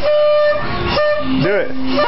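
Paper party horns being blown: several steady buzzing toots at different pitches, one after another and overlapping, with a lower horn starting just past a second in and held.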